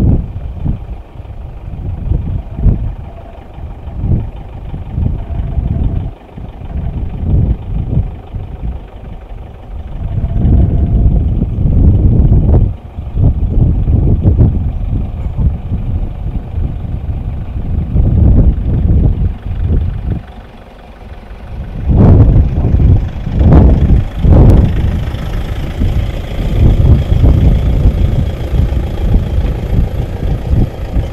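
Engines of cars and an open safari truck idling and creeping along a tar road, heard as a loud, uneven low rumble that surges and drops.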